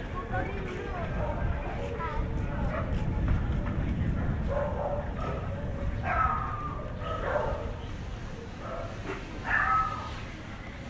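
A dog barking a few times, with short barks about six, seven and nine and a half seconds in, over street noise and voices.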